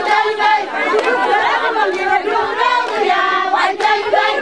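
A group of women singing together in chorus, their voices overlapping, with chatter mixed in.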